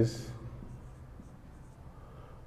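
Marker pen writing on a whiteboard: faint, short scratchy strokes as a word is written out.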